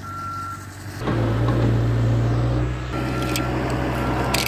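A vehicle reversing alarm sounding repeated steady beeps at one pitch, over a low engine drone that starts suddenly about a second in.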